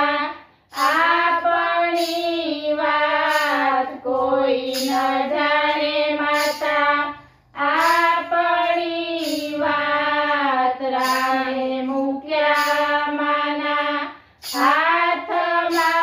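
Women's voices singing a Gujarati Ram bhajan together in unison, without instruments. The sung phrases break off briefly three times: about half a second in, about halfway through, and near the end.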